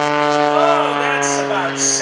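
MX-2 aerobatic monoplane's 350-horsepower engine and propeller droning at high power through a hard aerobatic pull: a steady pitched tone that sinks slightly lower.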